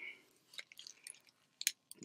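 Sealed foil booster pack wrappers crinkling faintly as hands slide and stack them, with a few sharper crackles near the end.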